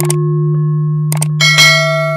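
Intro sound effects: a sustained ringing tone, a couple of sharp clicks about a second in, then a bright bell-like chime about one and a half seconds in that rings on.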